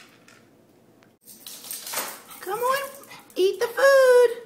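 A small dog eating dry kibble from a plastic bowl, the kibble and bowl clattering from about a second in. In the second half come several short high-pitched vocal sounds that rise and fall in pitch.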